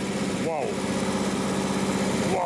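Warm car engine idling steadily with its thermostat open and water pump circulating coolant, a fast even pulse under a steady hum. Two short voice-like sounds rise and fall over it, about half a second in and near the end.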